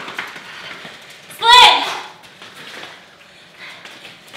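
A single short, loud, high-pitched vocal cry about a second and a half in, rising and then falling in pitch, like a whoop of exertion during a fast footwork drill.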